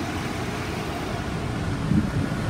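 Ford F-550 bus's 6.7-liter diesel engine idling with its air conditioning running: a steady low hum and rush.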